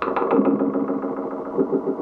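Piano played through effects pedals, giving a sustained, pulsing texture with a sharp new attack at the start.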